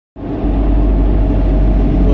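Steady road and engine rumble inside the cabin of an SUV driving at highway speed, cutting in abruptly at the very start.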